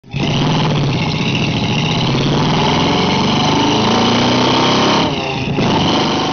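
A vehicle engine running loud and revving, its pitch climbing over the middle seconds, with a short dip about five seconds in.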